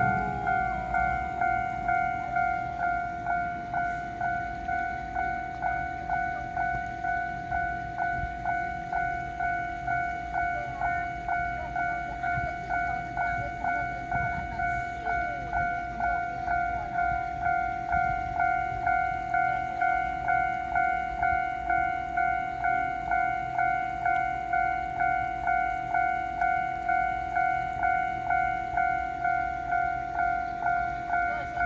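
Railway level-crossing warning bell ringing in a steady, even rhythm of about two strikes a second, signalling an approaching train.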